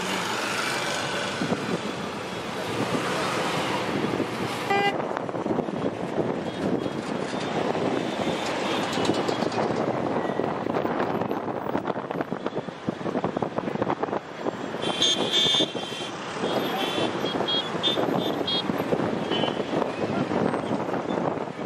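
Steady road traffic noise, with a run of short high-pitched sounds about three-quarters of the way through.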